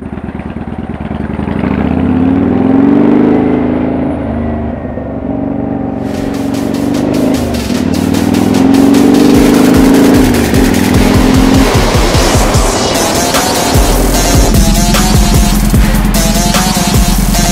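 Kawasaki Vulcan 900 V-twin motorcycle engine accelerating under the rider, its pitch climbing twice and dropping between as it shifts gear. Background music with a steady beat comes in about six seconds in and is the loudest sound by the end.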